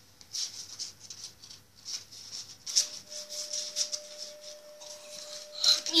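Pokémon trading cards being flipped through and slid against one another in the hands, a quick irregular papery rustling.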